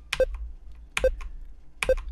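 Three short phone beeps, about one a second, over a low steady hum: the tone of a mobile call that has dropped.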